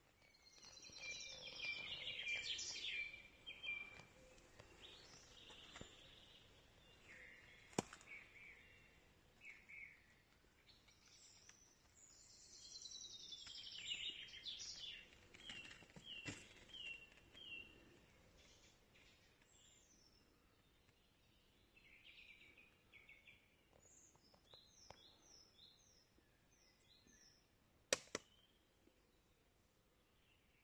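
Faint songbirds singing in the woodland: several phrases of quick repeated high notes, with a single sharp click about eight seconds in.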